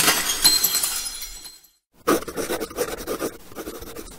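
Glass-shattering sound effect: a loud crash of breaking glass with tinkling shards that dies away over about a second and a half. About two seconds in, a second run of quick, irregular noisy sound follows.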